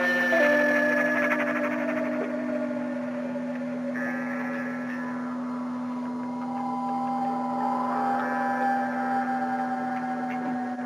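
Background music: a steady low drone under long held notes that change slowly.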